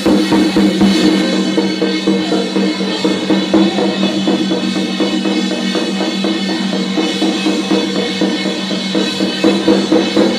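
Chinese temple drums beaten in a fast, unbroken rhythm over a steady, held ringing tone.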